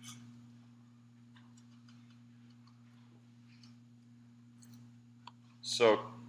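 Quiet room with a steady low electrical hum and faint, scattered clicks and taps. A man's voice says one word near the end.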